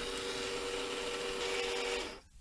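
Clack WS1 water softener control valve's drive motor running with a steady hum, moving the valve into the first cycle of a manually started regeneration.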